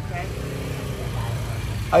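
A motor scooter's engine running with a steady low hum, with faint voices in the background.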